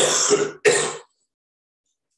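A man coughs twice in quick succession, two rough bursts about half a second apart.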